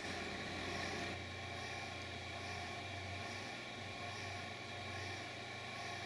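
Steady low hum with an even faint hiss from a reef aquarium's running pumps, unchanging throughout.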